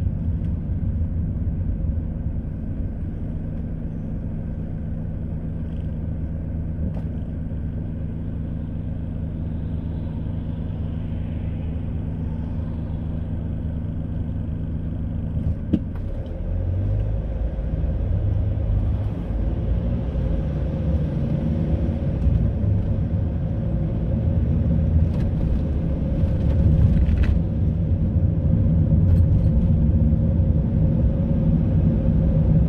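Car cabin engine and road noise while driving: a steady low engine hum and rumble that grows louder and rougher from about halfway through.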